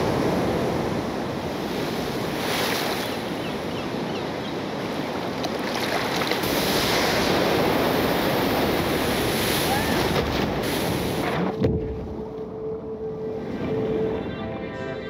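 Ocean surf with wind: waves breaking and rushing. About 11.5 s in comes a splash, after which the sound turns muffled, as if underwater, and a steady low tone comes in.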